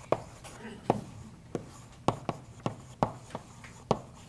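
Chalk writing on a blackboard: about ten sharp taps and short scratches as the letters are written, spaced unevenly.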